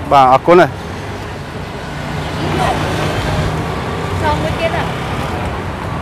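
Street traffic: a passing motor vehicle's engine hum swells about two seconds in and eases off again, over a steady background of road noise.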